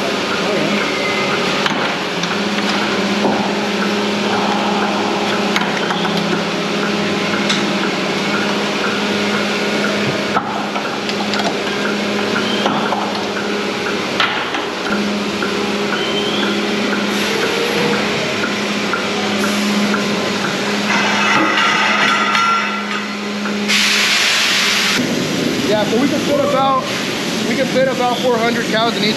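Milking parlour machinery running: a steady hum with light regular clicking over it. Near the end comes a loud hiss about a second long.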